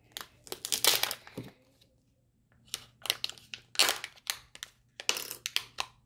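Foil wrapper of a Kinder Joy egg being torn and peeled off by hand, crackling in three bursts with a short quiet gap about two seconds in.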